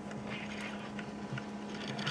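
Low steady background hum with a few faint light clicks from test-probe leads and wires being handled.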